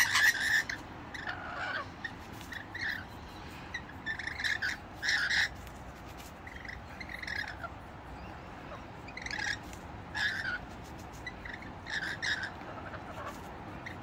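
Rainbow lorikeets giving short chirps and squawks while they feed, a brief call every second or so.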